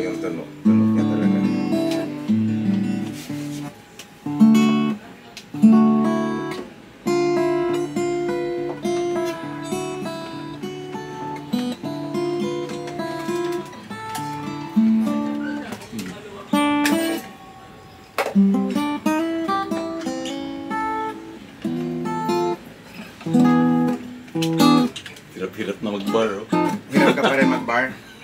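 Elegee Adarna steel-string acoustic guitar, with a solid Sitka spruce top, rosewood back and sides and phosphor bronze strings, played unplugged. Plucked notes and chords ring out and fade, with sharper accented strikes now and then.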